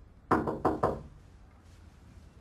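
Three quick knocks on a wooden door, coming within about half a second.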